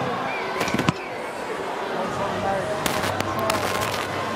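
Rugby stadium crowd noise, a steady hubbub with distant voices, broken by a few sharp knocks about a second in and again around three seconds.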